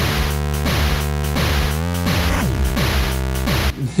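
Short electronic intro jingle: loud held synthesizer tones with a run of falling pitch swoops and one rising sweep about halfway through, stopping shortly before speech resumes.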